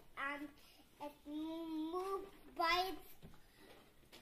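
A young boy's voice: a short word, then a long drawn-out sung tone that rises slightly, then a short higher call.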